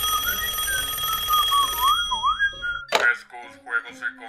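Telephone ringing, a steady buzzing ring that stops about three seconds in, with someone whistling a wandering tune over it. A voice follows near the end.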